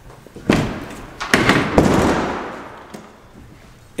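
A sharp knock, then a quick run of thumps and knocks, the last one trailing off into a fading clatter over about a second.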